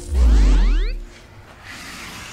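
Edited-in sound effect: a loud, deep boom lasting about a second, with quick rising sweeps over it, followed by a soft airy whoosh that swells near the end.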